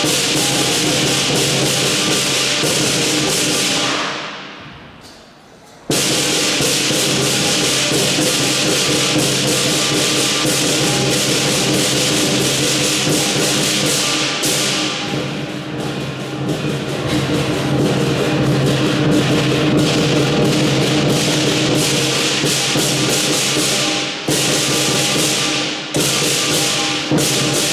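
Southern lion dance percussion: a large lion drum with clashing cymbals and gong, played fast and loud. It dies away about four seconds in and crashes back in suddenly about two seconds later.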